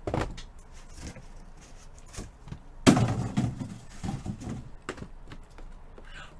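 A sharp knock a little under three seconds in, with a few fainter clicks and handling noises before and after it.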